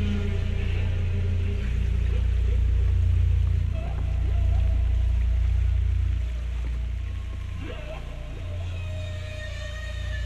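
Electronic ambient intro of loops and effects: a deep, steady low drone with faint gliding tones drifting above it. It drops in level about six seconds in.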